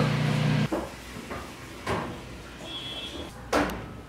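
Oven and tray handling in a bakery kitchen: a steady low hum stops abruptly early on, then come a few sharp knocks and clicks, the loudest near the end, like a metal oven door and baking tray, with a faint short beep in between.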